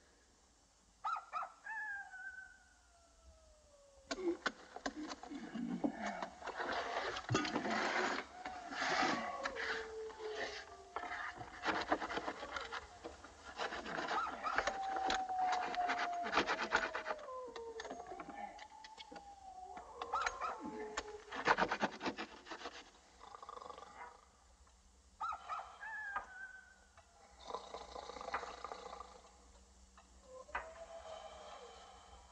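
Animals howling, several long falling howls overlapping one another, mixed with a stretch of dense scratching and scraping, the sound of digging at a wall.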